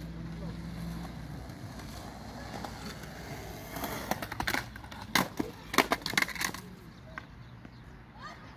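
Skateboard rolling on a concrete bowl, then a run of sharp clacks and knocks from the board and wheels between about four and six and a half seconds in.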